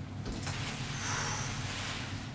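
Plastic bag rustling and crinkling as food is kneaded and mixed inside it by hand, soft and steady.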